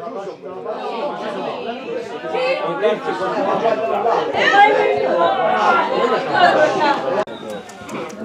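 Several people talking over one another: overlapping chatter from spectators, getting louder in the middle and cut off abruptly about seven seconds in.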